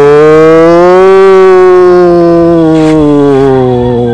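One long, loud pitched call held for about four seconds. It rises a little in pitch, then slowly sinks and fades near the end.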